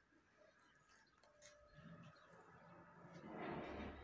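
Near silence with a few faint ticks, then a soft rustling near the end as an esparto-wrapped demijohn is picked up and handled.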